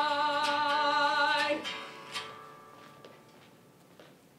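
Several voices holding the final chord of a sung stage song, with vibrato on the upper notes, cutting off about a second and a half in. Then the sound drops to quiet stage room tone with a few faint knocks.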